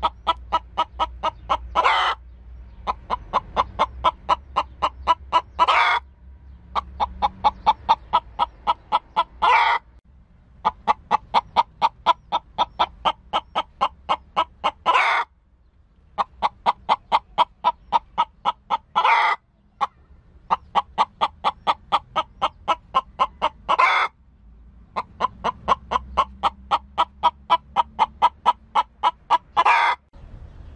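A hen clucking in rapid, even runs of about five clucks a second, each run ending in a louder, drawn-out call; the pattern repeats about seven times.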